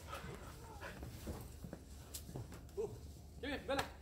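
Dogs playing in the snow with a person: soft scuffling and light knocks, then two short high cries close together near the end.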